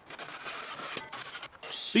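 Skew-back handsaw crosscutting a softwood 2x4 in uneven rasping strokes. After a break about one and a half seconds in, a steady high whine begins near the end.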